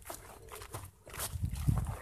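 Footsteps pushing through dry grass and brush: crackling stems and twigs, with heavier low thumps of steps in the second half.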